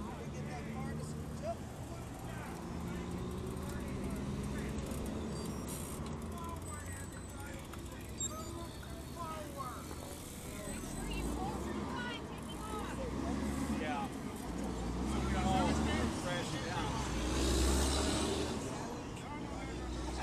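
Traffic at a road intersection: an engine hum early on, then vehicles passing with low rumbles that swell several times, loudest a couple of seconds before the end. Indistinct chatter from waiting cyclists runs underneath.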